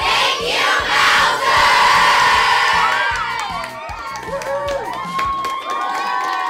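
A group of children cheering and shouting together, breaking out suddenly and loudly, with whoops rising and falling in pitch in the second half.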